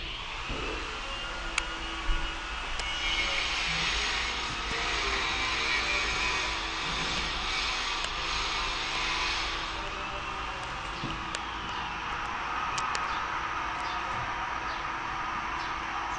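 Rain falling on corrugated roofing: a steady hiss with scattered drip ticks, swelling louder for several seconds in the middle.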